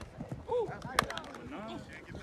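Scattered voices of players and coaches calling out across the field, with one sharp slap about a second in.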